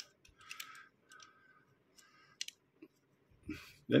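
Faint handling sounds of a small Matchbox toy truck turned over in the fingers: a few light clicks and soft rubbing of its plastic body and wheels, with one sharper click a little past halfway.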